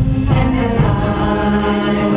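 Wind band and choir performing together live: the choir sings over sustained band chords, with a low bass line moving underneath.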